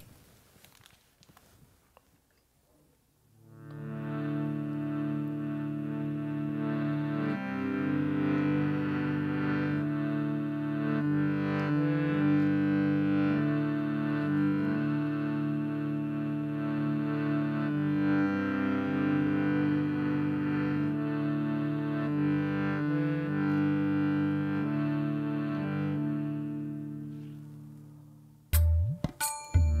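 Harmonium playing sustained chords, starting about three seconds in and fading out near the end, the chords changing every few seconds.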